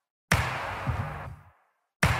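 A hip-hop percussion sample previewed over the drum beat: it starts suddenly, a hit with a hissy, noisy tail over low bass, and is cut off after about a second.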